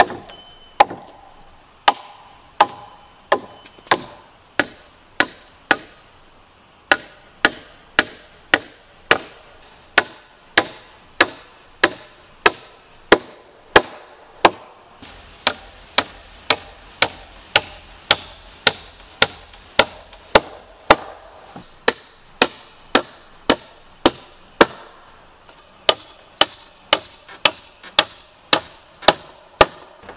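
Hammer driving nails into wooden deck planks: steady blows at about one and a half a second, with a short pause about six seconds in.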